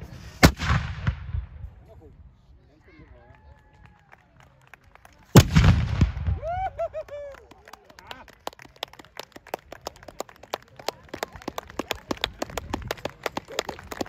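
Two small black-powder reenactment cannons firing a salute: two loud shots about five seconds apart, each with a rolling echo. Voices call out after the shots, and scattered clapping follows.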